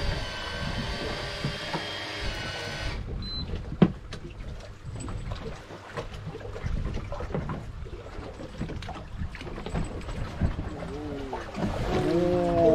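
Sounds aboard a small fishing boat while a hooked fish is brought alongside. A steady whine of several pitches runs for about the first three seconds and then stops. After it come water against the hull and handling noises, with a sharp knock about four seconds in and voices near the end.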